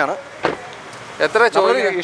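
Speech, with one short sharp knock or click about half a second in.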